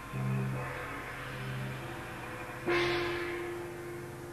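Large gongs struck twice: a low, humming stroke just after the start, then a louder, brighter crash a little before three seconds in that keeps ringing and slowly fades.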